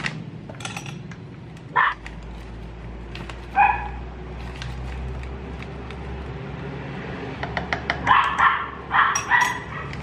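A dog barking: single barks about two and about three and a half seconds in, then a quicker run of barks near the end, with a few light clicks just before that run.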